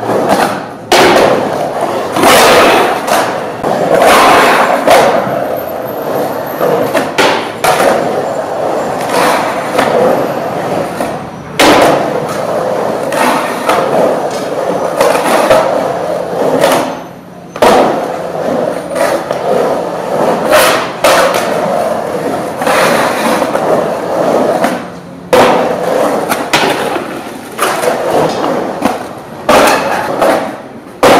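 Skateboard wheels rolling and carving around a concrete pool bowl, a loud continuous rumble broken by sharp knocks and thuds of the board. The rolling noise stops abruptly and starts again several times.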